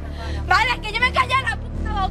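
A woman's raised, angry voice in an argument, over a steady low bass line of background music.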